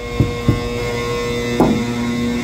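Steady humming drone of the pneumatic blower system blowing cement powder from the horizontal silo through the hose into the spreader truck's tank. Two short knocks sound in the first half second.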